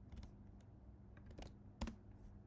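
A few faint keystrokes on a computer keyboard, scattered and irregular, with the loudest coming near the end.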